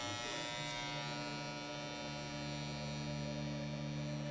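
Electric hair clippers buzzing steadily while cutting hair.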